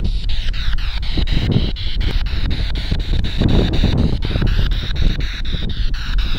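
Spirit box radio scanner sweeping through stations: chopped static that clicks over about six times a second, with strong wind buffeting the microphone.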